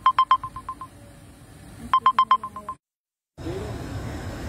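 Two runs of rapid electronic beeps from a phone, each a quick string of high, evenly pitched pips that fade away, the second run about two seconds in. Near the end the sound cuts out completely for about half a second.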